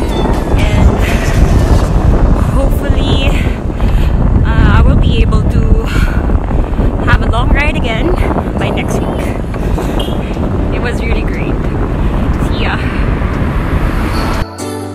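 Wind buffeting a phone's microphone on a moving bicycle, a dense rumble that runs through the whole stretch, with snatches of a woman's voice breaking through it.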